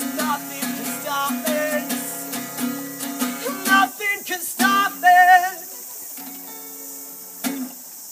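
Acoustic guitar strummed and picked, with a wordless held sung note wavering in vibrato about five seconds in. The playing then thins to a quieter ringing chord, with one last strum near the end.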